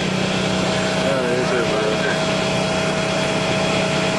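Steady drone inside the passenger cabin of a Greyhound coach bus: engine and ride noise with an unchanging low hum and a higher held tone. Faint voices talk in the background.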